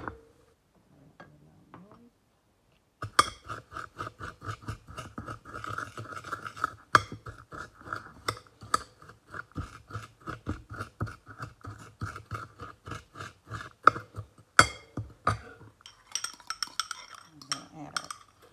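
Metal spoon stirring a crumbly brown-sugar cookie mixture in a ceramic bowl: fast, even scraping strokes, about four a second, that start about three seconds in and stop shortly before the end. The stirring sounds crunchy, the sign that the mixture is still dry and gritty.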